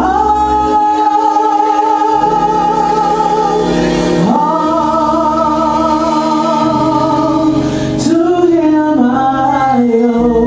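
A woman singing a gospel song through a microphone. She holds two long notes with vibrato, then sings shorter notes near the end, over sustained instrumental chords.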